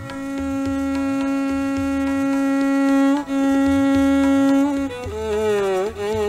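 Hindustani classical violin holding a long, steady bowed note, re-bowed about three seconds in, then sliding down in pitch and back up near the end in a meend. Low tabla strokes keep a steady rhythm underneath.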